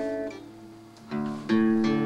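Acoustic guitar strummed: a chord rings out and fades, then new strums come in just after a second and again about half a second later.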